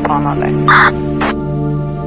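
Background music with held, steady chords. Over it run brief broken voice fragments at first, then one loud, short, harsh burst about three quarters of a second in and a fainter one soon after.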